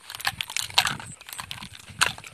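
Irregular rustling and clicking of footsteps through grass, with the phone held close to the grass and rubbed near the microphone.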